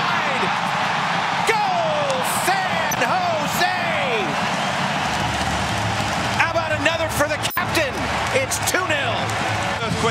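Stadium crowd cheering a goal, with single shouts rising and falling above the roar, and a run of sharp knocks or claps in the second half.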